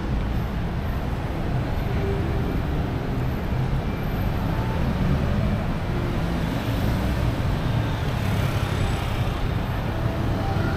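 Steady city street traffic noise: cars running past on the road as a continuous low rumble with no distinct events.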